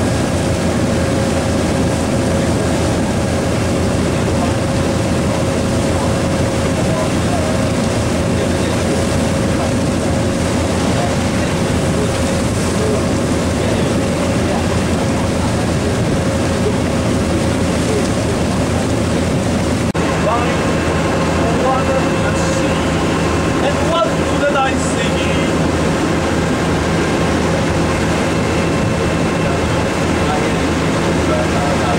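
Sport-fishing boat's engine running steadily underway, a constant low drone with a faint steady hum above it. The sound shifts to a slightly different steady drone about two-thirds of the way through.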